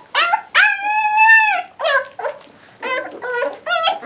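Leonberger puppies whining: a short whine, then a long high whine of about a second that dips in pitch at its end, followed by a run of short yelping whines.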